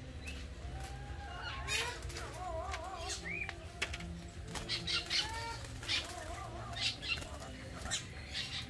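Caged birds calling: repeated wavy, warbling whistles and short rising chirps, mixed with scattered short clicks, over a steady low hum.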